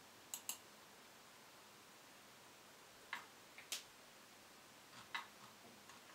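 Near silence: quiet room tone broken by a few short, light clicks, mostly in pairs, just after the start, about three seconds in and about five seconds in.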